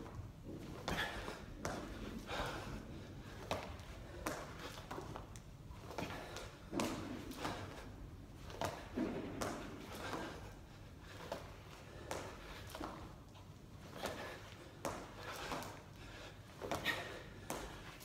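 A person doing full burpees on a hard hall floor: repeated thumps and slaps as hands, chest and feet land, in clusters every second or two.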